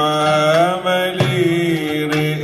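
Male cantor singing a long, ornamented melodic line in Middle Eastern style with oud and frame drum accompaniment, with a drum stroke a little after a second in.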